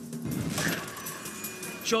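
News-channel graphics transition sound effect that swells about half a second in and slowly fades, over background music.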